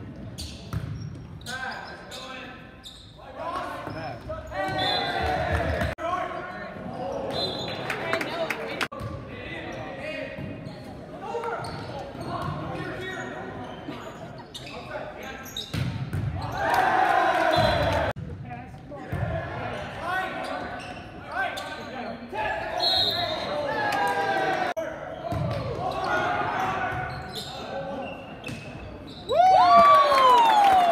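Volleyball being hit back and forth in a gymnasium: sharp thuds of the ball struck over and over, under players and spectators shouting and chattering, all echoing in the large hall. The voices swell about halfway through and a loud shout comes at the very end.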